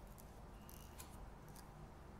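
Near silence: a few faint, light ticks from thread and small jig-tying materials being handled at a tying vise.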